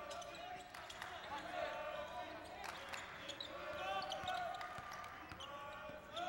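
Basketball being dribbled on a hardwood court during live play, with the crowd's voices murmuring steadily underneath.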